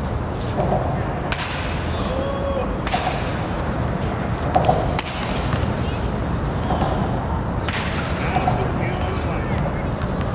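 Batting practice in a cage: two sharp cracks about six seconds apart, with a fainter knock between them, over a steady low rumble.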